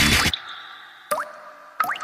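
A music track cuts off, leaving water-drop sound effects: two quick drip sounds, each a rising pitch glide, about three-quarters of a second apart, with a faint high ringing between them.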